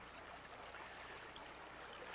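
Faint, steady rush of a riffle of fast-running stream water.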